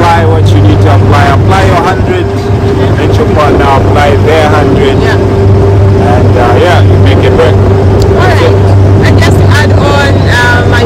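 Motorboat engine running under way, a loud steady low drone with a steady hum above it that holds unchanged throughout, with people talking over it.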